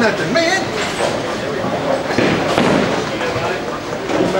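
Bowling alley with people talking in the background, and a bowling ball set down on the wooden lane partway through, rolling toward the pins with a steady rumble.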